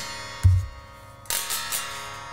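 Guerilla Guitars M-SR6 Shinobi electric guitar played unplugged: two strummed chords, about half a second and a second and a quarter in, each ringing out loud and full from the neck-through maple and basswood body.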